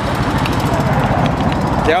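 Several motorcycle engines idling close by, a loud, dense low rumble.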